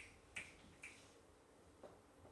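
Faint footsteps on a hard floor: three short clicks about half a second apart, then a softer one near the end, otherwise near silence.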